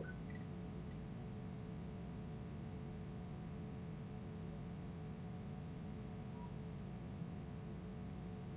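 Faint steady room tone: a low hum and hiss with a thin constant tone, and no distinct sounds.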